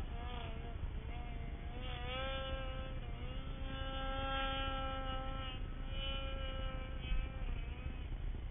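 Snowmobile engine running at high revs as the sled rides through powder, its whine wavering up and down in pitch and holding steady for a couple of seconds in the middle, over a low rumble.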